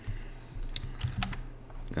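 Computer keyboard typing: a handful of separate key taps, spread unevenly over a couple of seconds, over a faint steady hum.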